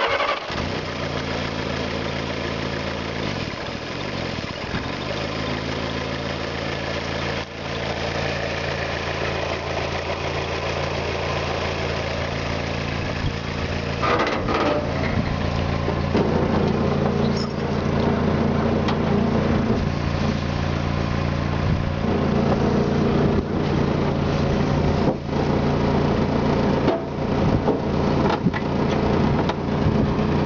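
1946 Willys CJ2A's four-cylinder flathead engine starting and then idling steadily, running again on a rebuilt carburettor, cleaned fuel tank and fresh battery after years of sitting. It runs a little louder from about halfway through.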